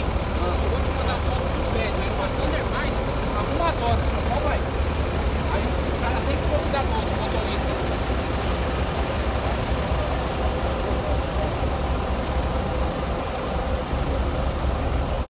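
Steady low rumble of diesel city buses idling close by, with people talking around them, the voices mostly in the first few seconds.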